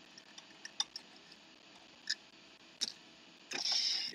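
A few scattered light metallic clicks, then a short scratching rasp near the end, as a door lock is worked at by hand.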